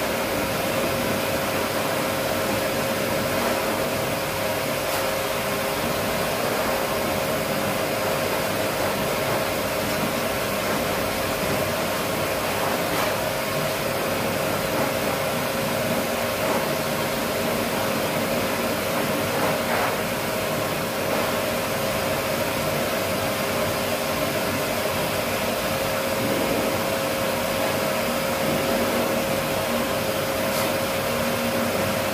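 Pet force dryer running steadily, blowing air through its corrugated hose onto a wet husky's coat: rushing air with a constant whine.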